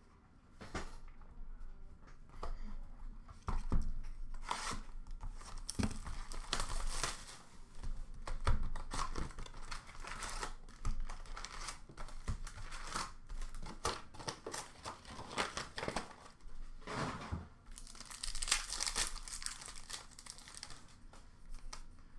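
Upper Deck hockey card packs being torn open by hand, the wrappers crinkling and crackling irregularly, with cards being handled. It starts about a second in and runs on in uneven bursts with small clicks.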